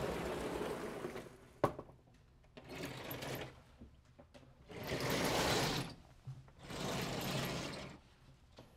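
Vertically sliding chalkboard panels being pushed and pulled along their tracks. Four runs of rattling noise, each about a second long, the loudest about five seconds in, with a sharp knock between the first two.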